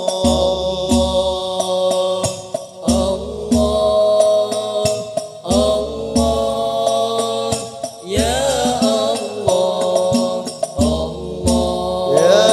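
Al-Banjari sholawat: male voices singing a wavering Arabic devotional melody through a PA system, over terbang frame drums played in a repeating rhythm.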